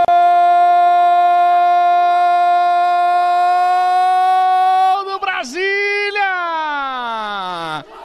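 A male sportscaster's drawn-out goal cry, 'goool', held on one high pitch for about five seconds, then wavering and sliding steadily down in pitch until it breaks off near the end.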